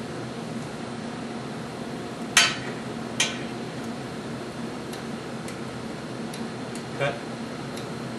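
Two sharp metallic clinks about two and a half and three seconds in, then a few faint ticks, over a steady ventilation hum: tools and hardware handled while a fixed laser is leveled and tightened down on its mount.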